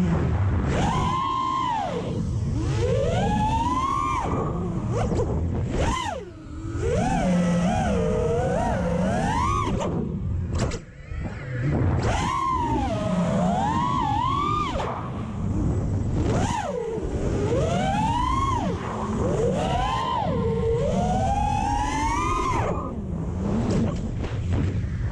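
FPV racing quadcopter's iFlight XING 2207 2450 kV brushless motors and propellers whining, the pitch swooping up and down over and over with the throttle, and dipping briefly twice, about six and eleven seconds in. Heard from a camera mounted on the drone itself.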